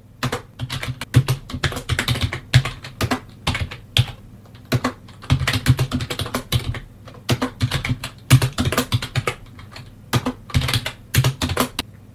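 Typing on a computer keyboard: quick bursts of keystrokes with short pauses between them.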